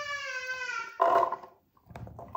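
A single drawn-out, high-pitched vocal cry lasting about a second and sliding slightly down in pitch, followed by a short second sound.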